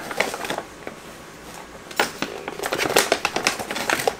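Brown paper takeout bag crinkling and rustling as hands rummage in it, in two spells with a lull of over a second between them.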